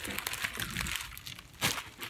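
Plastic packaging crinkling as it is handled, in a dense run of rustles through the first second and another short burst about one and a half seconds in.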